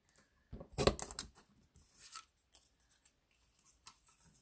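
Stampin' Up Banners Pick A Punch cutting the end of a cardstock greeting strip: a quick cluster of clicks and a snap about a second in as the punch is pressed, then faint paper rustling as the strip is drawn out of the punch.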